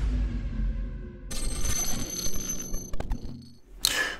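Electronic intro sting under a channel logo reveal. A deep bass hit fades out, then about a second in comes a bright, bell-like high ringing that slowly dies away, with a few sharp clicks near the end.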